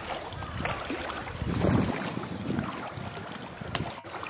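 Water sloshing and lapping around a hippopotamus swimming with its head at the surface. A louder low rush comes about one and a half seconds in.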